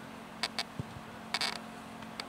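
Sounds of a football match in play: a few short sharp knocks, a dull thud just under a second in and a brief noisy burst near the middle, over a steady low hum.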